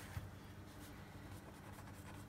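Faint scratching and crackling of a sharp knife tip scoring the oiled filo pastry top of a cheese pie, over a steady low hum.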